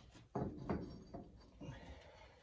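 Red clay bricks knocking against each other as broken pieces are handled and fitted: four knocks in under two seconds, each with a short ring.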